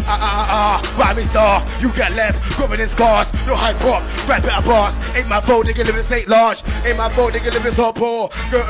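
An MC rapping fast into a handheld microphone over a grime beat with a heavy bass line. The bass drops out briefly about six seconds in.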